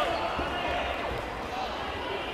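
Sports-hall hubbub: many voices talking at once, echoing in the large room, with a single thump right at the start.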